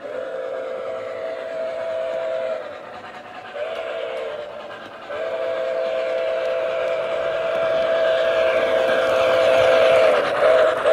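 Steam whistle from the sound system of an MTH Premier O-scale model steam locomotive: a long blast, a short one, then a long drawn-out one, over the rolling rumble of the model train on its track, which grows louder as the train comes closer.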